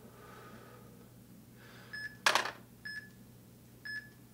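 Workout interval timer beeping three times, short electronic beeps about a second apart, counting down the last seconds of the set. A brief burst of breath-like noise comes between the first two beeps.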